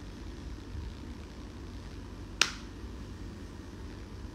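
Low steady room noise with a single sharp click about two and a half seconds in.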